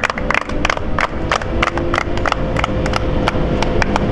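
A small group of people clapping: sharp separate claps at an irregular pace, several a second, over a steady low hum.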